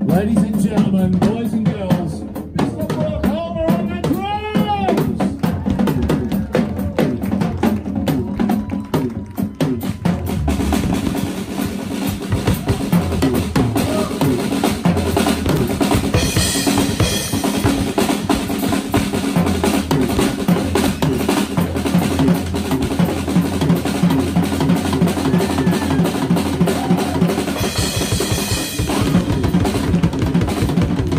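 Live rock band playing, the drum kit to the fore: bass drum, snare and cymbals in a fast, steady beat, with louder cymbal stretches about halfway and near the end.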